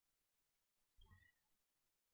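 Near silence: room tone, with one very faint, brief sound about a second in.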